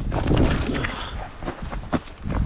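Wind buffeting the microphone as a low, uneven rumble, with a few crunching steps on dry gravel.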